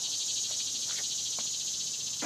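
Steady, high-pitched insect chorus with a fine pulsing texture, with two faint clicks near the middle.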